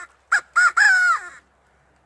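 Hand-held squirrel call blown by mouth, imitating a squirrel: two short notes, then a longer call that drops in pitch at its end.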